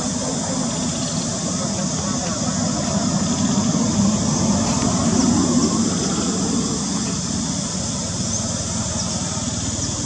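Steady outdoor background noise with a low rumble and indistinct voices.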